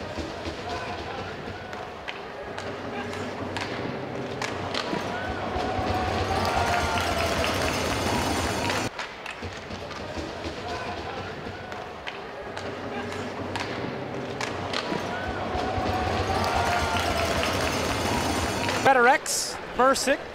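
Ice hockey arena game sound: skates on the ice, stick and puck clicks, and crowd noise with scattered distant voices, building for several seconds. About nine seconds in it cuts off and the same stretch plays again.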